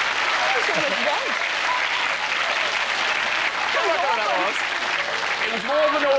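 Studio audience laughing and applauding: a steady wash of clapping and laughter, with a few voices rising over it now and then.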